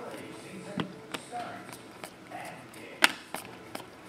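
Glossy trading cards being flipped and shuffled by hand, with a few short sharp clicks as the cards snap against one another, the loudest about three seconds in.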